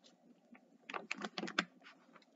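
A quick run of soft clicks and rustles about a second in, as a stuffed fabric heart cushion is handled and brought up close to the microphone.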